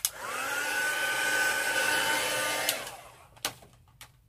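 Craft heat tool (embossing heat gun) drying freshly stamped ink. It clicks on, its fan whine rises quickly to a steady pitch and runs for about two and a half seconds, then winds down after it is switched off, with a click near the end.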